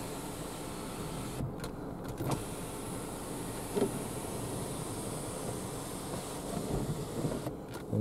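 Jaguar XE's electric panoramic sunroof motor running steadily as the glass panel slides closed.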